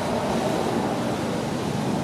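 Steady outdoor background noise, an even rushing with no distinct events.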